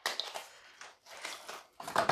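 A small cardboard box being opened by hand and its contents slid out: a run of short, irregular scrapes and clicks.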